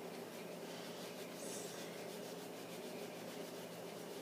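Faint rubbing and scraping over a low, steady room hum.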